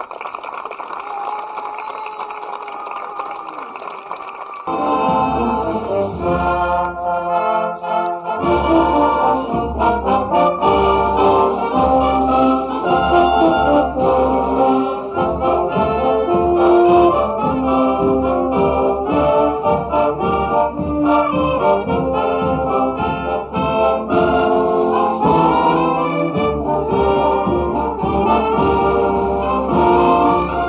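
A wind band of brass and saxophones playing: a lighter opening without bass, then the full band with tubas comes in about four and a half seconds in and plays on.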